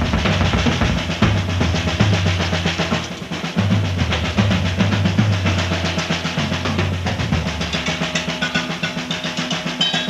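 Instrumental section of early-1970s progressive rock: a busy drum kit with a bass guitar line beneath it. The bass drops away about three-quarters of the way through, leaving mostly drums and cymbals.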